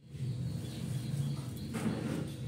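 A gas stove burner runs with a steady low rumble under an aluminium saucepan of simmering liquid. Near the end there is a brief scraping swish as a spoon stirs the pot.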